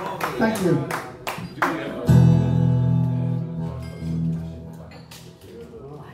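Electric guitar: a single chord strummed about two seconds in and left to ring, dying away over about three seconds. Before it come a few words of talk and some short clicks.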